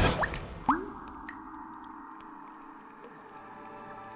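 Two water drops plopping into water within the first second, each a short upward-gliding 'bloop', the second louder. Quiet, sustained background music follows.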